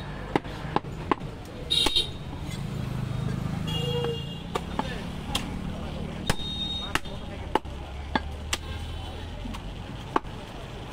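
Butcher's cleaver chopping through a goat (mutton) leg: about a dozen sharp chops at an uneven pace, over background voices and a low hum.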